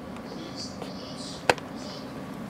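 German Shepherd panting softly, in short breathy puffs over a faint steady hum. A single sharp click about one and a half seconds in.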